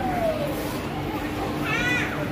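A young child's short, high-pitched squeal near the end, with a thin falling call at the start, over the steady chatter of a busy shop.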